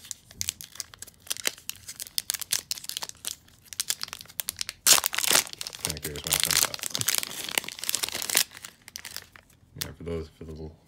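Plastic wrapper of a Topps baseball card pack crinkling in the hands and being torn open at its crimped seam, with the loudest tear about halfway through and more crinkling of the opened wrapper after it.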